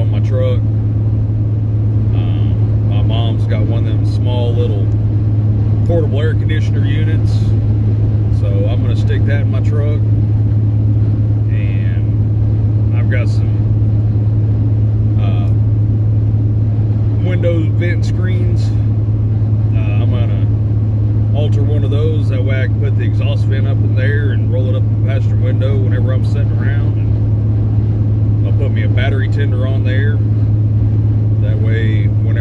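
Steady low drone of a semi truck's engine and road noise heard from inside the cab, with a man talking over it.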